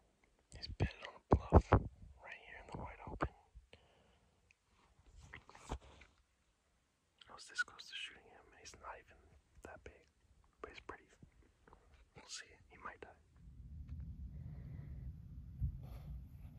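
A man whispering close to the microphone in short, breathy phrases. A low steady rumble comes in near the end.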